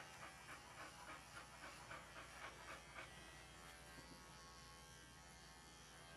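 Wahl Bravura cordless pet clipper running with a faint, steady buzz as it shaves the short coat on a dog's rear.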